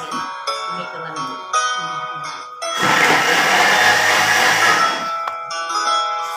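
A Thermomix's blade runs in one short turbo burst of about two seconds, starting about three seconds in and cutting off sharply, over background music.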